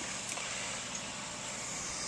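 Aquarium filter running: a steady, even hiss of circulating water with a low hum.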